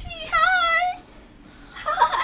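A single high-pitched, wavering whine or squeal lasting under a second, followed by a short quiet gap.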